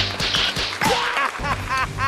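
Staged-fight sound effects: a quick run of whip-like whooshes and smacks as kicks and blows land, with short rising-and-falling cries in between.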